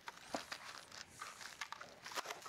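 Faint crinkling and rustling of small plastic bags of hardware being handled, with a few light ticks.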